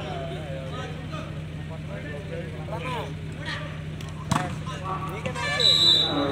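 Spectators' voices and shouts at a volleyball game over a steady low hum, with one sharp smack of the ball about four seconds in and a short, loud, shrill tone near the end.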